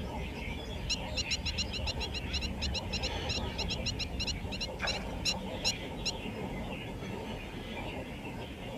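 A bird calling in a fast run of short, nasal notes, about six a second for some four seconds, then three louder single notes spaced about half a second apart, over a steady low rumble.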